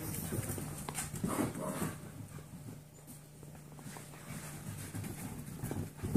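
Seven-week-old Golden Retriever mix puppies scrambling and play-fighting, with scattered clicks and knocks from paws and claws on the floor. The action is busiest in the first two seconds and quieter through the middle.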